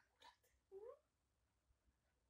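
A single brief, soft vocal sound rising in pitch, about a second in, in an otherwise near-silent room.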